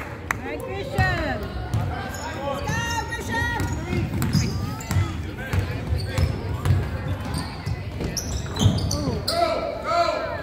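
Basketball dribbling and bouncing on a hardwood gym floor, with sneakers squeaking as players cut and run. A few hand claps right at the start.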